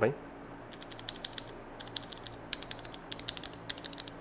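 Mechanical keyboard switches in a small clear sampler being pressed by hand, giving quick irregular clicks in clusters from about a second in.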